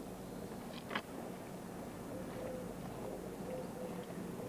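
Quiet street ambience picked up by an old camcorder's built-in microphone: a steady low hum with one brief sharp sound about a second in.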